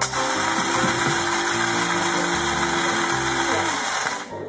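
A loud, steady rushing noise with a faint hum, like a running motor, that cuts in and out abruptly, over background music.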